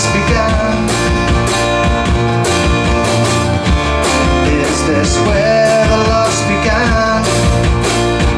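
Live band playing a rock song: strummed acoustic guitar, electric bass and drum kit with a steady beat and cymbal strokes.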